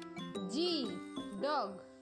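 Light children's background music with jingling notes. Two short pitch swoops, each rising and then falling, come about half a second and a second and a half in.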